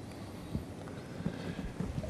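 A few soft, low knocks and thumps over quiet room tone: handling noise at a lectern.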